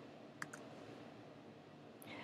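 Two quick clicks of a computer mouse button about half a second in, with a faint room hush otherwise.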